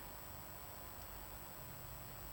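Faint, steady room tone and hiss, with no distinct sound event.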